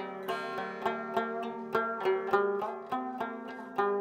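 Rubab (Afghan/Pakistani rabab) plucked in a quick melody, about three to four notes a second, each note ringing over a steady drone of sympathetic strings. It is played with Pa, the fifth, as the tonal centre, which makes the instrument ring more fully.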